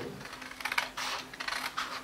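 Scissors snipping through a sheet of paper: a run of short, crisp cuts starting about half a second in.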